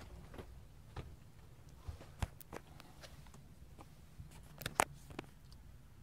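Quiet room tone inside a motorhome over a low steady hum, broken by scattered light knocks and clicks: footsteps and handling noise as someone walks through the coach. The sharpest knock comes about two seconds in and a quick pair near the end.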